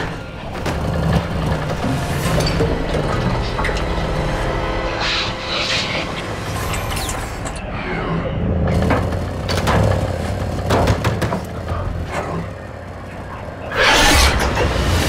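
Dark horror-film score and sound design: a low rumbling drone under music, with several sudden swells and hits through it.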